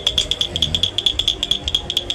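Wooden pull-along toy drawn across a table on its string, giving a rapid run of sharp, high ringing clicks, about ten a second.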